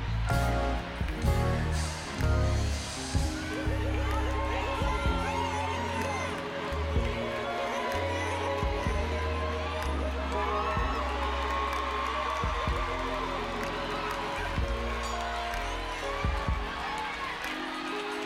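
Live R&B band playing a slow groove under the show, with deep held bass notes changing every second or two.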